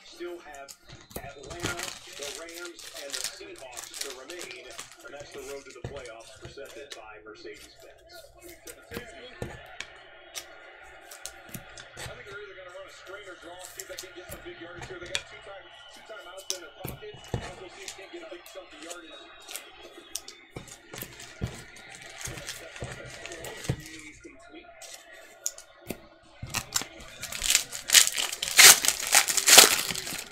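Foil wrapper of a trading-card pack crinkling and tearing as it is ripped open by hand, loud and dense over the last few seconds. Light clicks of card and wrapper handling come before it.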